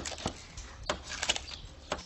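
Crisp pururuca pork skin crackling as a knife and fork cut through it: scattered sharp cracks, several in quick succession just past the middle.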